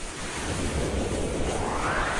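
Rushing whoosh sound effect of an animated video intro, a noisy swell that rises in pitch through the second half.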